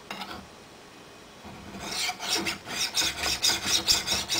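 Flat hand file rasping across the mouth of a .50 BMG brass case that sticks up out of a trim die, filing the excess brass flush with the top of the die to trim the case to length. The strokes begin about one and a half seconds in and come quickly and rhythmically, growing louder.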